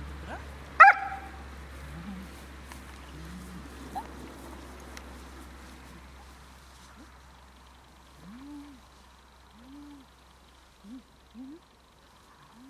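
A dog working at heel gives one sharp, loud yip about a second in. Later it makes a string of short, low whining moans, each rising and falling. This is the unwanted vocalising the dog is being trained out of.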